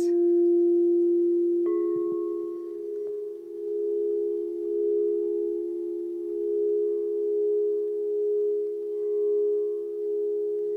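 Crystal singing bowls ringing. One bowl's low tone sustains, and a second, higher bowl sounds sharply about two seconds in. The two tones ring on together, swelling and fading in a slow, wavering beat.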